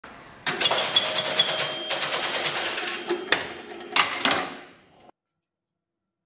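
Rapid mechanical clicking and clattering, several clicks a second, with a few louder knocks near the end, cutting off abruptly about five seconds in.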